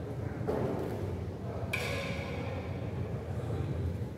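Indoor badminton hall: a steady low hum, a soft knock about half a second in, and a sharp click just under two seconds in that rings briefly as it fades.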